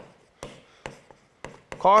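Stylus tapping on a tablet screen while handwriting: a series of sharp clicks a few tenths of a second apart. A man's voice says one word near the end.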